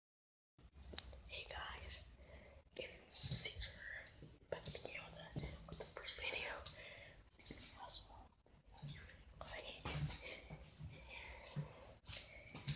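A person whispering, with a loud hissing burst about three seconds in.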